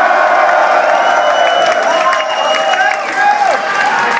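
Large concert crowd cheering and shouting, a dense wash of many voices with single yells rising and falling through it.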